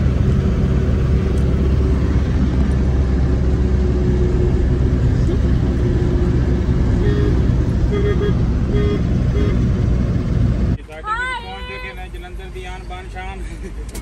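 Steady low rumble of a passenger van's engine and road noise, heard from inside the cabin while it drives. About eleven seconds in it cuts off abruptly and people's voices take over.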